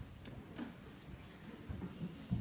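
Faint hall room noise with a few soft, short clicks and knocks.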